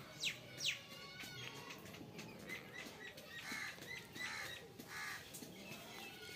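Birds calling: two sharp downward chirps near the start, then a series of shorter, harsher calls in the middle.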